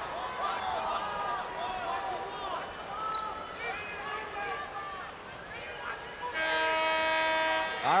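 Arena crowd voices and shouts, then about six seconds in a steady electronic horn blast lasting about a second and a half, the loudest sound here. It is the basketball scorer's table horn signalling the end of a timeout.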